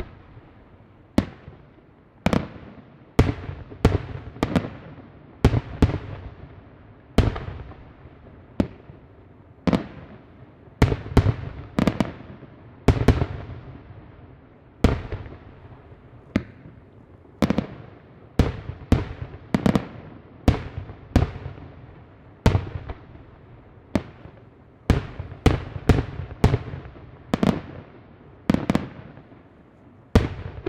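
Aerial display firework shells bursting in quick, irregular succession, about one to two sharp reports a second, each followed by a trailing echo.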